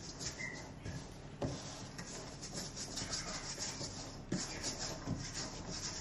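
Floured hands rubbing and working dough around the sides of a stainless steel mixing bowl: a soft scraping and rustling, with two light knocks.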